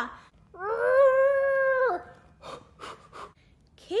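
A woman's long, high, strained cry held steady for over a second, an acted labour pushing scream, followed by a few short breathy pants.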